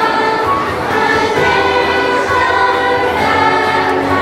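A choir singing a song, with long held notes.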